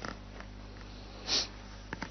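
A short sniff a little past halfway through, over a steady low hum, with a faint click near the end.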